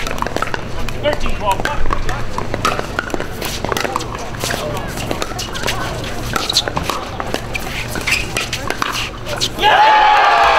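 Pickleball paddles hitting the plastic ball in a doubles rally, a run of sharp pops over spectators' murmur. Near the end the crowd breaks into loud cheering as the rally ends.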